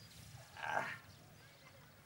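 A man's short, breathy grunt of effort, about half a second long, as he heaves himself up from sitting.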